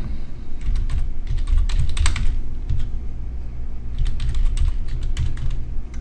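Computer keyboard keys being typed in two quick runs, entering a username and then a password, with a pause of over a second between them. A steady low hum runs underneath.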